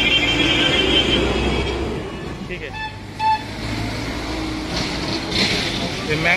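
Electric juice mixer (blender) running with a steady high whine that stops about two seconds in. Street traffic follows, with two short horn beeps around the three-second mark.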